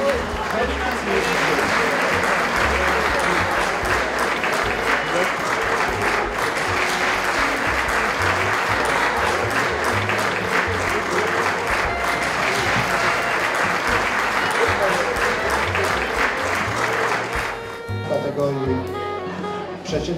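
Audience applauding over background music with a bass line. The applause stops near the end.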